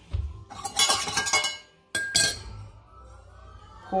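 Glass kitchenware clinking: a quick run of clinks with a light ring for about a second, then one sharp clink about half a second later.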